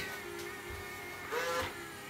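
Cheap robot vacuum cleaner running on carpet, a steady motor hum with its side brushes turning, as it backs and turns away from a step edge.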